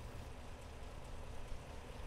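Faint steady background noise with a low hum and no distinct event.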